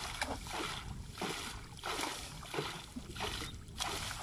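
Repeated water splashes, about one every two-thirds of a second, as water is thrown up beside a wooden boat and a leafy branch is plunged and shaken in the river.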